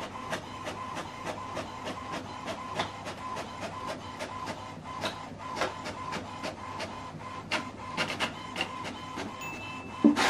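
HP Smart Tank 7605 inkjet printer printing a page: a steady whirring motor tone with many regular clicks as the sheet feeds out.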